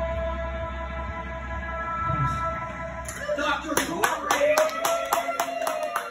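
Electric guitar and bass let a final held chord ring out, the low bass dropping away about two seconds in. About halfway through, a small audience starts clapping, with voices over it.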